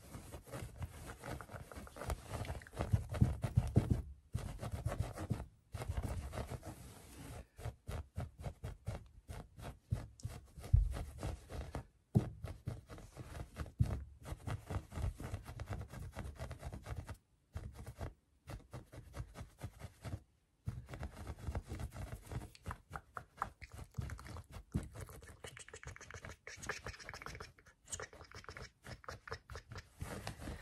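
Fingers tapping and scratching fast on a shaggy faux-fur rug: quick, irregular strokes and scrapes, several a second, with a few brief pauses.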